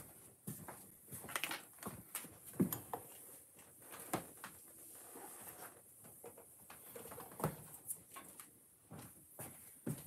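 Small plastic building-brick parts being handled, with scattered light clicks and knocks as a stuck pin in the model is tugged at. The sharpest clicks come about two and a half, four and seven and a half seconds in.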